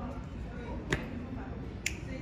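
Department-store background noise: a low steady hum with faint distant voices, cut by two sharp clicks about a second apart.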